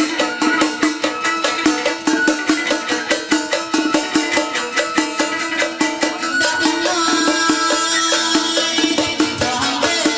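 Vietnamese chầu văn ritual music accompanying a hầu đồng spirit-possession ceremony: a stepping melody with fast, even percussion strokes.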